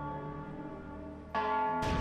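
A church bell rings, its tone dying away, then is struck again about one and a half seconds in. A sudden heavy bang cuts in right at the end.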